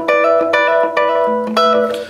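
Fender Telecaster electric guitar playing a hybrid-picked rockabilly blues lick in E: quick repeated plucked double-stops over a held bass note, with a new bass note coming in partway through.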